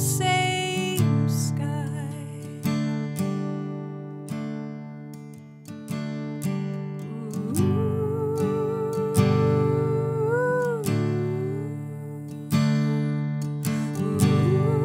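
Taylor acoustic guitar chords, each struck and left to ring and fade. A woman's voice holds one long note with vibrato from about seven to eleven seconds in, lifting briefly near its end.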